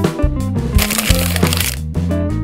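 Background music with a steady bass line, joined about a third of a second in by a crackling, crinkling noise that lasts about a second. The crinkle is that of foil wipe packets being crumpled and smoothed.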